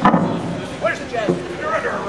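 Indistinct chatter of several voices, with a single sharp knock right at the start.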